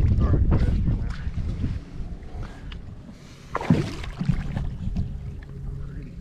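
Wind buffeting the microphone on an open skiff, a low rumble that is heaviest in the first second and a half and then eases. A single sudden, sharp sound cuts through about three and a half seconds in.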